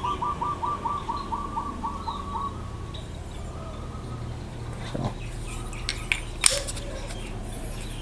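A bird calling in a quick run of about a dozen short, identical chirps, roughly five a second, that stops after about two and a half seconds. A couple of faint clicks follow later.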